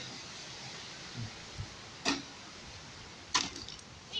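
A few knocks over a steady hiss, with two sharper ones about two seconds in and just after three seconds: blows on a burnt-out, rusted microwave being beaten apart.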